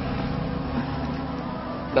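A steady low hum with several held tones, unchanging throughout.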